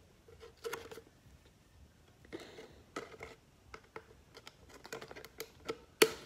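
Faint handling noise close to the microphone: scattered light clicks and short crinkly rustles, with a slightly longer rustle a little after two seconds in.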